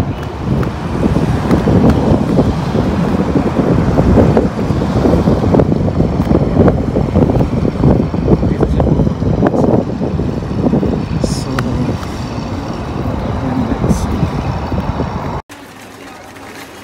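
Wind buffeting a phone microphone outdoors: a loud, uneven low rumble that cuts off abruptly near the end.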